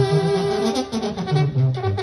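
A live banda brass band playing instrumentally: the tuba walks a bouncing bass line in short notes under a held brass chord, with drum hits in the second half.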